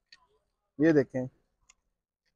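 A man's voice saying one short two-syllable word about a second in, with a couple of faint clicks; otherwise near silence.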